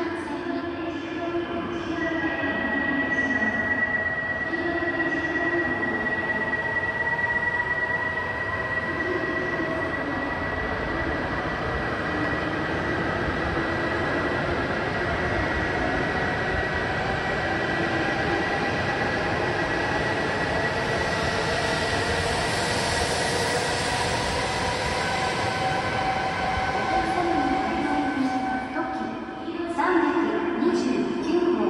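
E5 series Shinkansen train running along an underground station platform. A steady high whine holds for most of the time over the rolling noise, and a hiss grows louder past the two-thirds mark.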